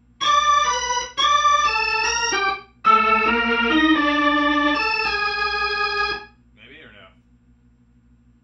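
Hammond B3 organ playing held chords in two phrases. The first runs from just after the start to about two and a half seconds in; after a brief gap the second runs to about six seconds in.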